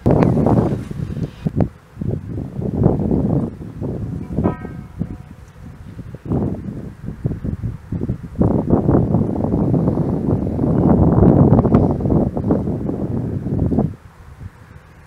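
Wind buffeting the microphone in irregular gusts, a low rumble that swells and fades, strongest in the second half. A brief pitched call sounds about four and a half seconds in.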